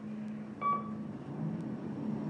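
A single short electronic beep from the elevator car's fixtures, about half a second in, over a steady low hum inside the elevator cab.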